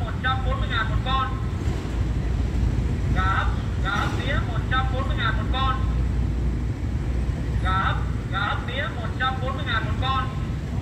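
A recorded voice warning from a railway level-crossing loudspeaker, the same short message looping about every four and a half seconds while the barrier is down for an approaching train. A steady low rumble runs underneath.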